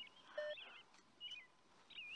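Faint bird chirps: several short, warbling calls a fraction of a second apart, over quiet outdoor ambience.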